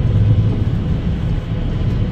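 Steady low rumble of road and engine noise inside a car cruising at highway speed.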